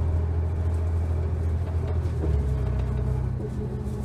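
A 2001 New Flyer D30LF city bus's Cummins ISC six-cylinder diesel running under way, heard from inside the cabin as a steady low drone. The engine note changes and drops about halfway through.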